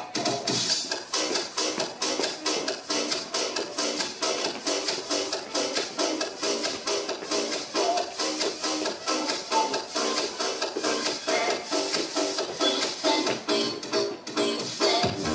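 Upbeat electronic dance music with a fast, steady beat; the deep bass drops out about half a second in, leaving the higher parts.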